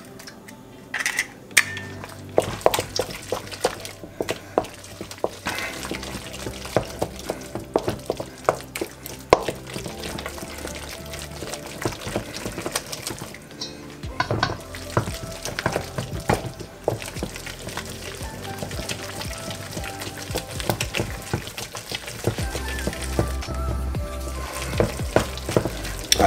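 Wooden spoon beating an egg into choux pastry dough in a stainless steel bowl: repeated clicks and scrapes of the spoon against the metal bowl, with background music underneath.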